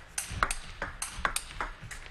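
Table tennis rally: the ball's sharp ticks off paddle rubber and table, one after another at several a second.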